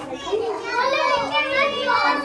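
Several children talking and calling out over one another in high voices, growing louder about half a second in.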